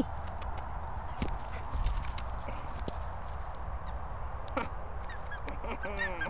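Steady outdoor background noise with a low wind rumble on the microphone and a few faint clicks.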